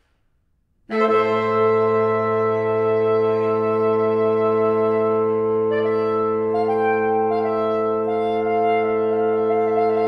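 Saxophone quartet begins about a second in on a long held chord over a steady low note. From about six seconds in, the upper voices start to move while the chord beneath holds.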